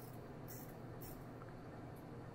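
Quiet room tone with a steady low hum, and two brief soft swishes about half a second and a second in from playing cards being handled on a close-up pad.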